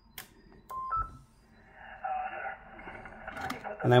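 Yaesu FT-857D transceiver powering up: a click, then two short beeps, the second higher, followed by its receiver audio coming up as hiss with faint stations on the 40 m band.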